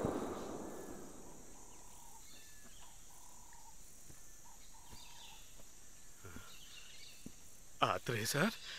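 Faint outdoor woodland ambience with a few short bird calls, after a loud sound dies away in the first second. A brief vocal sound breaks in at the very end.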